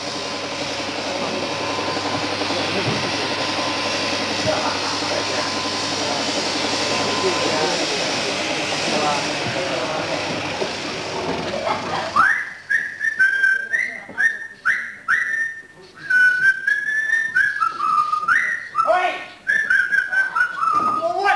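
Overhead-drive sheep-shearing machine and handpiece running with a steady mechanical whirr, stopping abruptly about twelve seconds in. Whistling follows: a run of short sliding notes.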